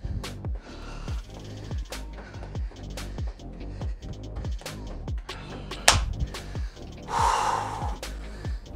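Background workout music with a steady kick-drum beat, over a man breathing hard after exercise, with one loud exhale near the end.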